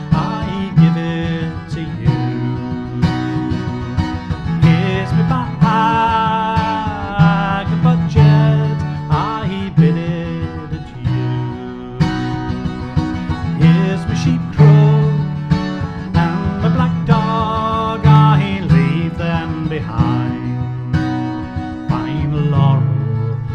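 Acoustic guitar playing a folk-song accompaniment, with repeated low bass notes under plucked chords. A voice sings over parts of it.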